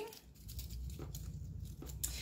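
Faint rustling of a wired artificial boxwood garland being handled, with a couple of small soft ticks, over a low steady hum.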